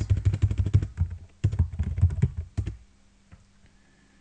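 Fast typing on a computer keyboard: a quick run of keystrokes, a brief pause, a second run, then the typing stops a little under three seconds in.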